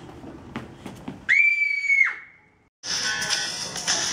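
A shrill, whistle-like high tone held steady for under a second, gliding up at its start and down at its end, then a brief dead silence before background music starts.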